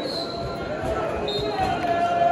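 Football crowd in the stands: many voices shouting and calling, with held, sung-like notes near the end, over a background of crowd noise. Several low thuds sound under the voices.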